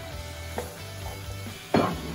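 Raw sausage pieces sizzling in hot olive oil with onions and garlic in a frying pan, a wooden spatula scraping and stirring them; a louder burst of scraping and sizzling near the end. Background music plays underneath.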